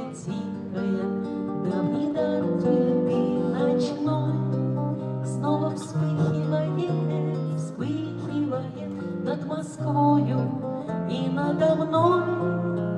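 Acoustic guitar playing an instrumental passage between the verses of a song.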